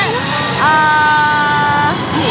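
Electronic sound effect from a Hokuto no Ken Kyouteki pachislot machine: a held chord of several steady tones, starting about half a second in and lasting about a second and a half. It sits over the steady din of a pachinko hall.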